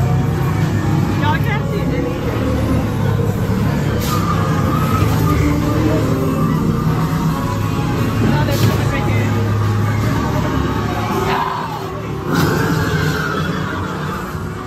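Loud haunted-maze soundscape: a heavy low rumbling drone under eerie music, broken by short sharp bursts of noise about four seconds in, at about eight and a half seconds and again near twelve, with voices in the background.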